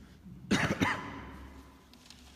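A person coughing twice in quick succession, the coughs echoing off the hard walls and floor of a large room.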